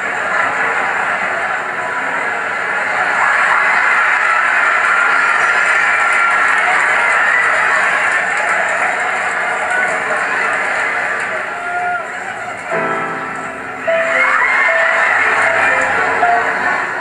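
A grand piano being played live, with a loud, steady audience noise of cheering and shouting over it; a few held chords stand out near the end.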